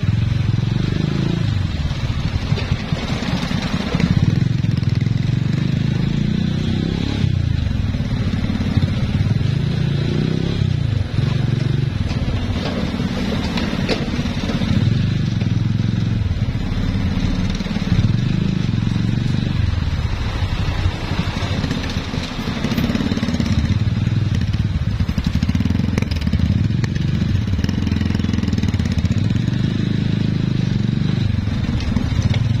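Motorcycle engine and road noise heard from the rider's own bike at low speed in stop-and-go traffic, a steady low rumble that swells and eases as the throttle opens and closes.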